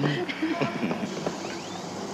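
Indistinct voices, with a short exclamation at the start and fainter talk after it, over a steady background hiss.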